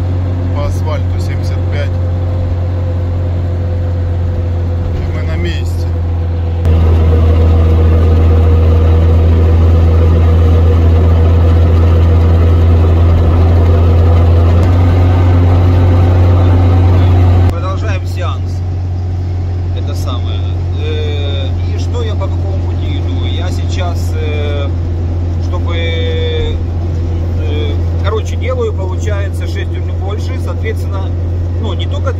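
Steady low drone of a UAZ Patriot cruising on a paved highway, heard from inside the cab: engine and road hum with a constant pitch. It steps louder about a quarter of the way in and drops back a little past halfway.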